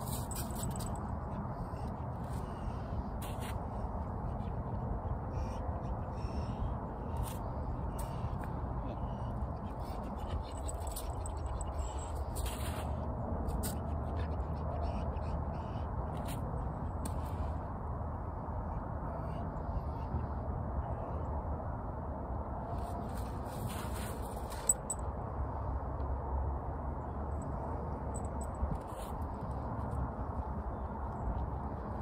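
Outdoor background noise: a steady low rumble with scattered faint clicks and rustles.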